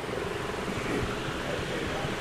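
Steady low hum of room noise, with faint indistinct voices wavering in the background.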